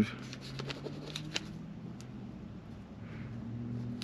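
Pen writing on a small paper log strip, with a few scratchy strokes and ticks in the first second and a half, over a low steady hum inside a vehicle cabin.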